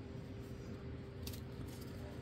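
Faint handling sounds of fingers picking at painter's tape on a cardboard mailer, with a couple of small clicks about a second in, over a steady faint hum.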